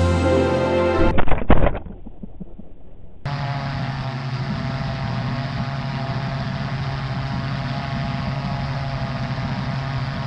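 Background music for about the first second. Then a few sharp knocks, the small 3D-printed lifting body plane hitting the grass, heard through its onboard FPV camera's audio. From about three seconds in a steady low motor hum runs to the end.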